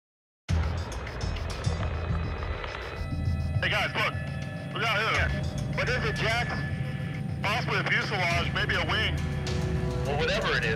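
Silent for the first half second, then background music over a low steady hum, with short indistinct voice-like phrases from about three seconds in.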